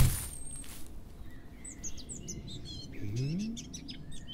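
Small birds chirping in quick, short, high calls from about two seconds in. A dull thud comes right at the start, and a short low rising hum about three seconds in.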